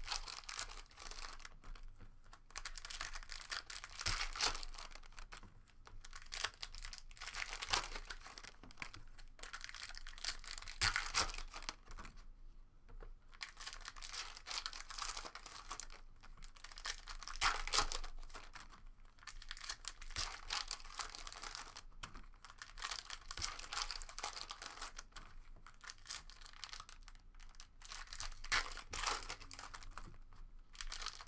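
Foil trading-card pack wrappers being torn open and crinkled, along with cards being handled, in repeated bursts of rustling every second or two with a brief lull partway through.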